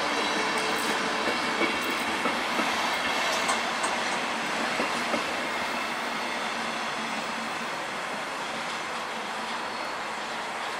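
Electric-hauled passenger train coaches rolling past at low speed, wheels clicking over rail joints and points. The sound fades as the train moves away.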